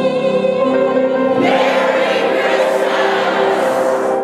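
Background choral music holding a sustained chord. About a second and a half in, a bright, hissy wash joins it and stops near the end.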